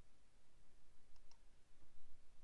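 Quiet room tone with two faint, short clicks a little past the middle.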